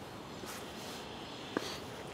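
Faint, steady outdoor background noise with one soft click about one and a half seconds in.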